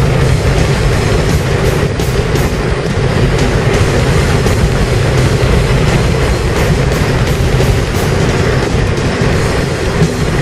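Steady road and wind noise inside a moving car's cabin, a constant low rumble with light flutter.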